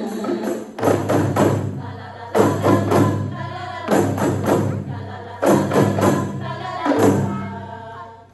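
Qasidah ensemble's hand-held tambourines (rebana) struck together in rhythmic clusters of sharp hits with ringing jingles, over group singing.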